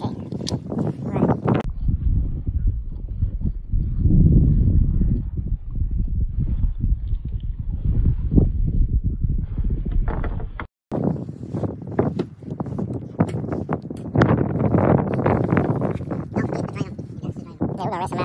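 Indistinct voices talking, with the sound cutting out for a moment about eleven seconds in.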